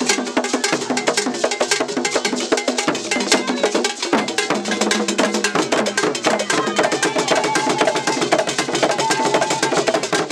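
Traditional Ghanaian drumming: hand drums and other struck percussion playing a fast, dense rhythm of many strikes a second, with no break.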